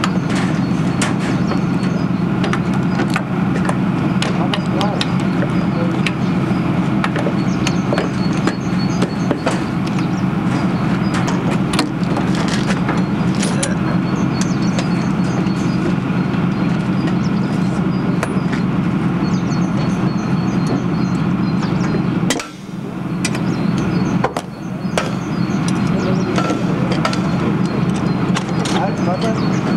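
A vehicle engine running steadily at close range, with light metallic clicks and knocks from a hand tool working the latches of an armoured vehicle's steel stowage bin. The engine sound drops out briefly about 22 seconds in.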